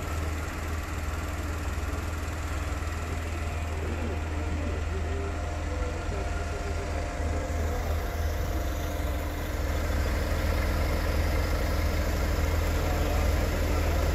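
Vehicle engines idling at the roadside with steady street traffic noise: a constant low rumble that grows a little louder in the second half.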